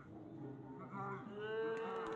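A person's faint drawn-out call, held on one steady note through the second half, after a few shorter faint voice sounds.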